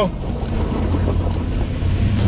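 Range Rover Sport's engine running under load as it crawls up a steep, loose rock climb, a steady low rumble with wind buffeting the microphone.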